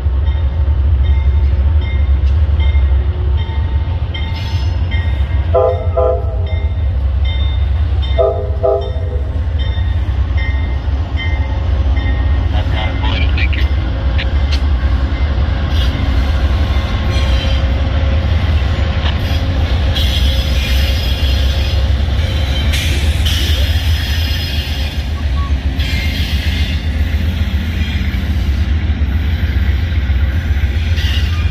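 Amtrak GE Genesis diesel locomotives rolling slowly past, their engines a steady low rumble throughout. There are two short horn blasts about six and eight seconds in. From about halfway on come wheels clicking over rail joints and steel-wheel noise as the locomotives and double-deck passenger cars go by.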